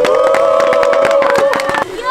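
Several men's voices holding one long, rising cheer over clapping. The cheer breaks off shortly before the end.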